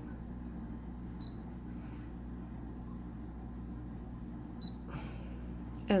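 Two short high beeps from a Brother SE600 embroidery machine's touchscreen as its buttons are tapped, about a second in and again near the end, over a steady low hum.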